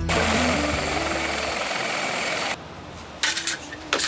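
Helicopter running with its rotor turning: a loud, even rushing noise that cuts off sharply about two and a half seconds in, followed by quieter sound with a couple of sharp knocks.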